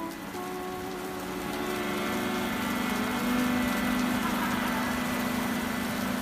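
Accordion holding sustained chords while rain sets in around it, the even hiss of the rain growing louder from about two seconds in.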